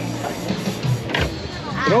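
Background music mixed with crowd chatter, with a short sharp knock about a second in and a man's voice starting near the end.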